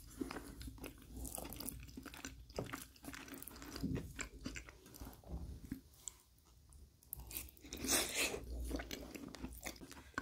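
Close-miked mouth sounds of a man chewing lasagna: a string of small clicks and smacks. It dips quieter around six seconds in, then a louder spell of chewing comes about eight seconds in.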